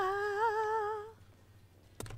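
A person's voice holding one drawn-out, slightly wavering note that ends about a second in.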